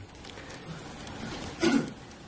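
Quiet room with faint laptop keyboard typing as a search term is entered, and a short throat sound from the presenter near the end.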